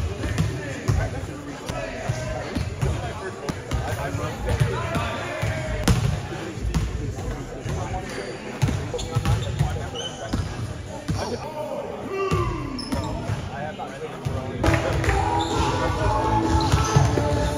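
Basketballs bouncing on a hardwood gym floor, a run of repeated thumps from dribbling and shots.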